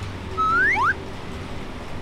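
A short whistle of two quick rising glides, about half a second in, the first longer and higher than the second, over a low steady hum.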